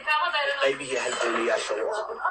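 Only speech: a voice talking without a break.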